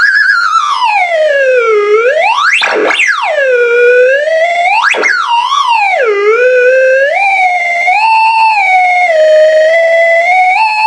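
Open.Theremin.UNO Arduino-shield theremin sounding through a small amplifier as a hand moves near its copper-wire aerial. Its single tone swoops up and down in pitch, with two quick sweeps up high about three and five seconds in. Over the second half it settles into wavering notes lower down.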